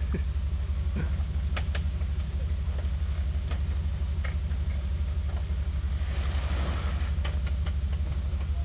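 Jeep Wrangler engine running steadily at low revs as it creeps along a rough trail toward a log, with scattered sharp clicks and knocks from the tyres and undergrowth. A brief scraping hiss comes about six seconds in.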